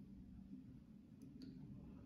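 Near silence: faint low room hum, with a few faint clicks of a marker tip on a whiteboard about a second and a half in.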